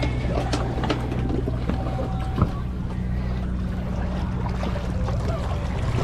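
Motor yacht's engines running in a steady low hum as the boat moves slowly through the water, with a single sharp knock about two and a half seconds in.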